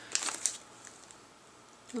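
Brief soft crinkling of a plastic vitamin sample packet during the first half second as a gummy is taken out, then low room tone.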